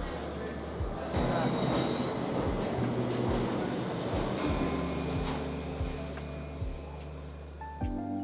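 Subway train running through the station: wheel and rail rumble with a thin electric whine that rises in pitch from about two seconds in. Under it, background music with a steady beat.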